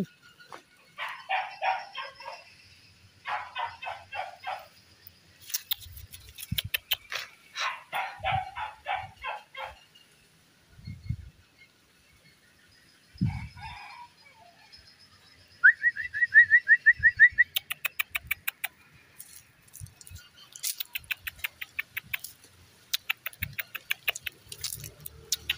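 Birds calling: several bursts of quick chattering in the first half, then a run of short rising chirps, about eight a second. Fast trains of sharp clicks fill the last several seconds.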